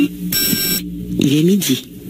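A short, high electronic beep lasting about half a second, followed by a brief voice, during a break in the intro music.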